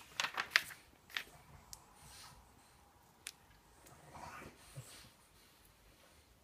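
Glossy magazine pages being turned by hand, with a burst of paper rustling and crackling in the first second and a single paper click later. A dog barks faintly in the background.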